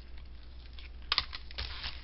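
Clear hard-plastic stamp-set cases being handled: light plastic clicks and taps, with one sharp click a little over a second in, followed by a quick cluster of smaller clicks.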